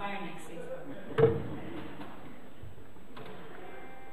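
A woman's voice trails off, then a single sharp knock about a second in, followed near the end by a faint, steady held note.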